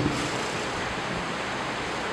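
Steady, even hiss of background room noise through the microphone, with no other sound standing out.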